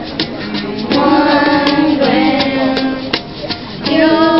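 Live unplugged band music: two acoustic guitars strummed, a hand shaker keeping time in steady ticks, and sung notes held over the chords.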